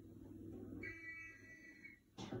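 A police whistle blown once in a film playing on a television, a steady high shrill note starting about a second in and cutting off sharply near the end, heard faintly through the TV's speaker as the signal to start a street football game.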